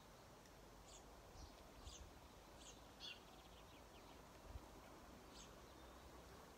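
Faint, scattered high bird chirps: about half a dozen short calls, with a brief rapid trill about three seconds in, over near-silent outdoor background.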